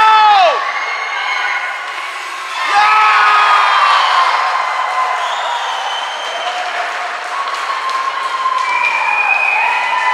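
Spectators at a youth ice hockey game shouting and cheering a goal, many high voices overlapping, growing louder about three seconds in and staying up.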